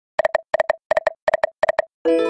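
Video slot machine game's reels stopping one after another, five in turn, each stop marked by a quick cluster of short electronic beeps at a steady pitch, about three a second.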